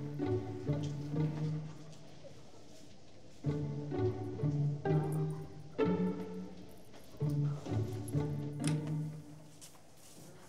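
Background score music: low strings playing three short phrases, each separated from the next by a pause of about two seconds.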